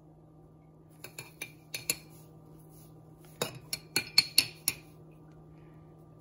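Metal spoon clinking against a glass mason jar: a few light taps about a second in, then a quicker run of sharper clinks starting about three and a half seconds in.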